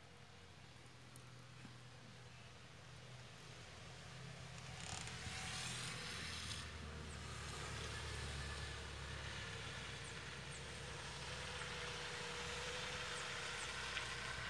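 Wind getting up outdoors: a rushing noise that swells over the first few seconds and then holds steady, with a low rumble of gusts on the microphone.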